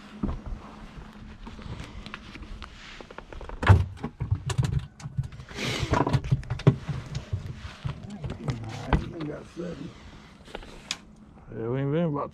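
Low, indistinct voices and laughter close to the microphone, mixed with scattered handling clicks and knocks. The loudest is a sharp knock about four seconds in.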